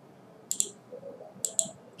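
Computer mouse clicked twice, about a second apart. Each click is a quick press-and-release pair.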